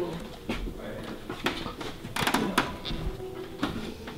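Faint murmur of voices with a few knocks and clatters of objects being handled, the sharpest cluster about halfway through.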